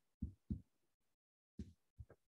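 Near silence broken by four faint, brief low thumps.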